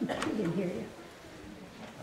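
A click, then a short, low, wavering voice sound lasting under a second, like a murmur or hum, before the room goes quiet.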